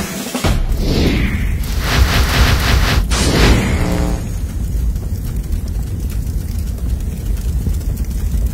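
Two whooshing sweeps over the tail of the music, then a steady low rumble with faint crackle from a fire sound effect.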